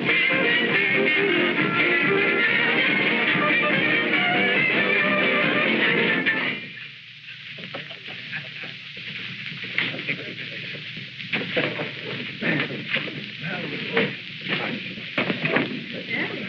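Dance band music on an early 1930s film soundtrack that stops abruptly about six and a half seconds in. It is followed by quieter voices and scattered clicks.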